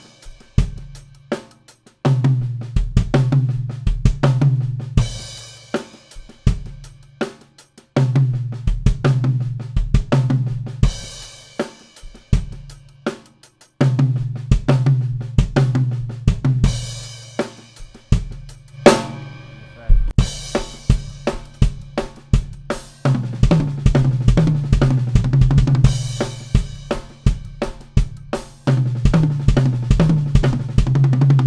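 Acoustic drum kit played solo: a repeating syncopated groove on kick drum, snare, hi-hat and cymbals, in phrases of a few seconds that start over again and again. Each pattern is stretched out and closed with runs of single strokes back to the downbeat.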